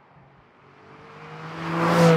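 Porsche 718 Cayman GT4's naturally aspirated 4-litre flat-six running at steady revs as the car approaches, growing steadily louder from near quiet and reaching the microphone near the end.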